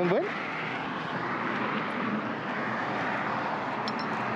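Steady rush of background noise from traffic passing on the bridge road, with a brief rising voice sound at the very start.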